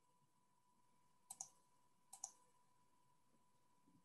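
Faint computer mouse clicks over near silence: two quick pairs, about a second apart, as layers are switched on in the map program.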